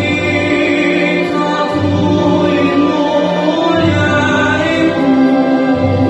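A man singing a slow, classical-style song in long held notes over backing music.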